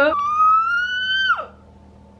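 A woman's high-pitched squeal, held for about a second with a slight rise, then dropping sharply in pitch and cutting off.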